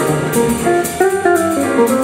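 Jazz band playing, with an electric guitar picking a single-note melodic line over cymbal strokes from the drum kit.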